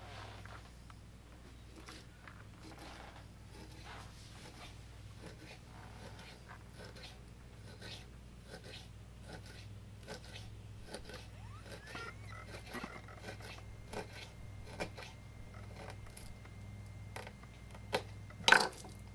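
Knife blade cutting through a raw sucker fillet on a wooden cutting board: a quiet, irregular string of small clicks and scrapes over a steady low hum.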